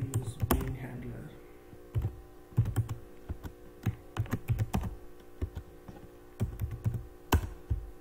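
Typing on a computer keyboard in short bursts of keystrokes, with one sharper key click about seven seconds in, over a faint steady hum.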